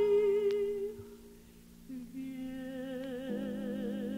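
Soprano voice singing long held notes with wide vibrato, accompanied by harp: one note fades away about a second in, and a new, higher note begins about two seconds in.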